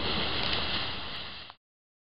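Ground fountain firework spraying sparks with a steady hiss that fades, then cuts off abruptly about one and a half seconds in.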